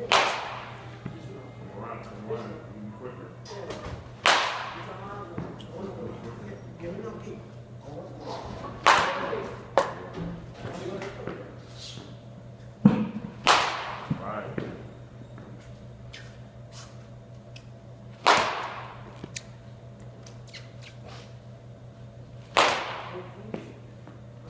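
Baseball bat hitting pitched balls in a batting cage: six sharp cracks, about one every four and a half seconds, each with a short ringing tail, with a few quieter knocks between them.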